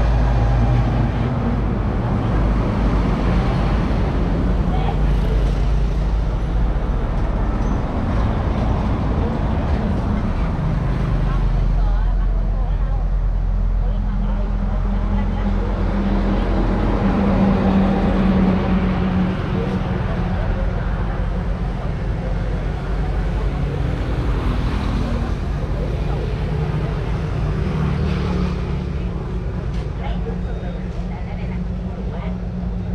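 Road traffic passing close by: a steady loud engine rumble from a large vehicle and motorbikes going past.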